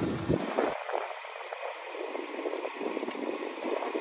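Steady wind-like hiss with faint crackles, from the intro of the music video playing in the reaction before the beat comes in.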